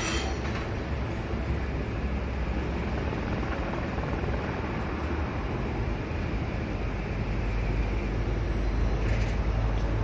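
A train running on the rails: a steady rumble and rolling noise that swells slightly near the end.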